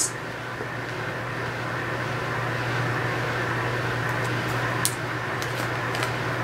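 Steady background hum and hiss in a small room, slowly getting a little louder, with a faint click about five seconds in.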